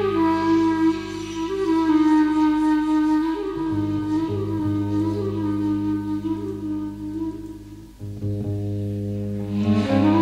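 Slow, wavering flute melody played over steady, held low bass notes, the bass dropping out briefly twice. This is an ambient meditation piece for flute and bass guitar.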